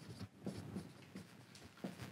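Dry-erase marker writing on a whiteboard: faint, irregular short strokes of the tip across the board.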